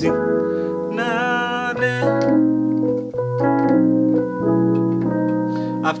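Electric piano voice on a digital keyboard playing sustained chords, changing chord several times, moving from an F♯ minor 11 voicing to a B7♭9.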